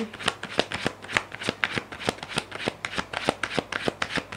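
A tarot deck being shuffled by hand: a quick, irregular run of card flicks and taps, several a second.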